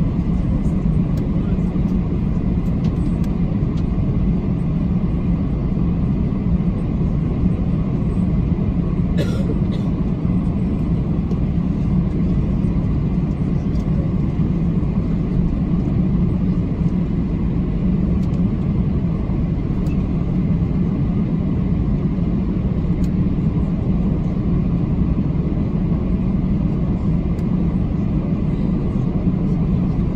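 Steady low cabin rumble of an Airbus A321 taxiing, its engines running at idle, heard from a seat over the wing. A single light click comes about nine seconds in.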